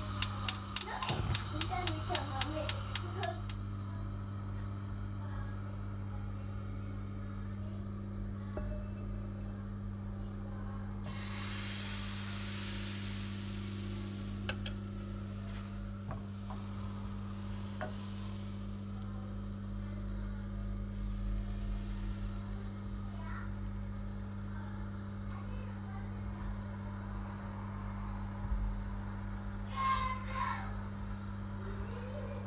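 Gas hob's spark igniter clicking rapidly, several clicks a second, for the first few seconds as the burner lights, over a steady low hum. About eleven seconds in, pancake batter starts sizzling in the hot frying pan, loudest at first and dying down over the next several seconds.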